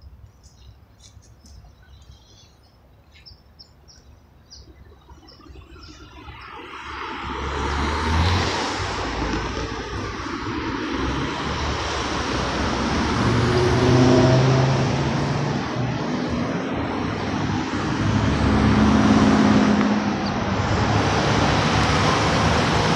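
Car traffic at a busy intersection. It is quiet at first apart from a few faint high chirps, then from about six seconds in cars drive through close by, and their tyre and engine noise rises and stays loud, swelling as individual cars pass.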